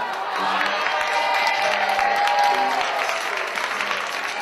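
Audience applauding, with music playing underneath.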